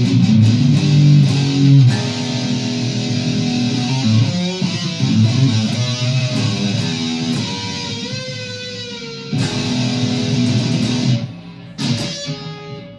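Firefly FFST relic Stratocaster-style electric guitar being played: chords at first, then single-note lead lines with string bends, then a chord left to ring out and fade, with a fresh strum at the very end.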